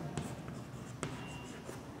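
Chalk writing on a chalkboard: faint scratching with a few sharp taps of the chalk on the board, the loudest about a second in.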